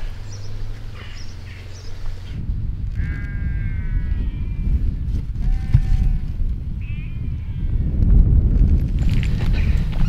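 Sheep bleating a few times in wavering calls, over a low rumble of wind on the microphone that grows louder near the end.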